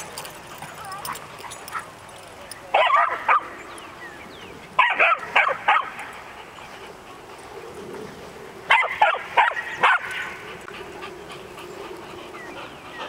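A dog barking and yipping in three bursts of several quick barks, about three, five and nine seconds in: protesting that another dog has her squeak toy.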